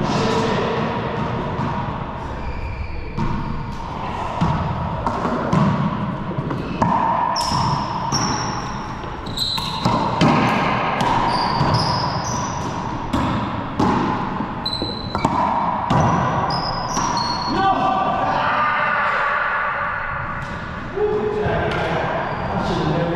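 Racquetball rally: the hollow rubber ball is struck by racquets and smacks off the walls and floor many times, each hit echoing around the enclosed court. Sneakers squeak in short high chirps on the hardwood floor, most often in the middle of the rally.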